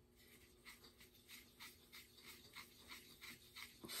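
A paintbrush stirring acrylic paint in a palette well, with faint, quick scratching strokes about four a second.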